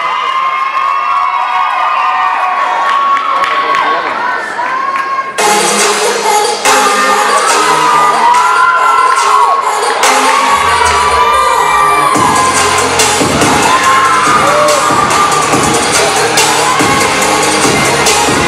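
A crowd of high voices cheering and screaming in a gymnasium. About five seconds in, loud dance music starts suddenly over the speakers, a heavy bass beat joins about ten seconds in, and the cheering carries on over the music.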